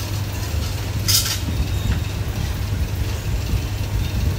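A steady low mechanical hum, with one short burst of hiss about a second in.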